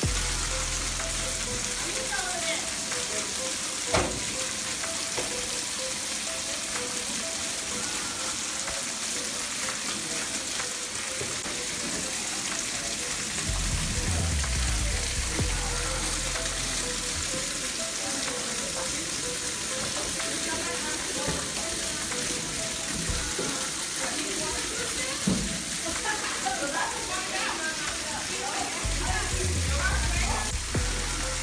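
Rainwater pouring steadily through a caved-in ceiling and splashing onto a flooded floor, a continuous hiss of falling water. A single sharp knock comes about four seconds in, and low rumbles swell briefly in the middle and near the end.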